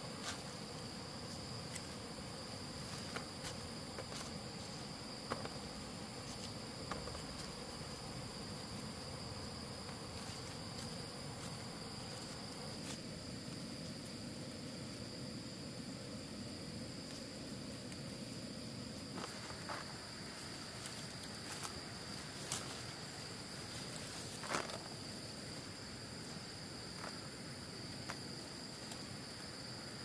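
Steady high-pitched insect chorus. Occasional soft knocks and rustles come from fruits being picked out of dry leaf litter and dropped into a woven bamboo basket.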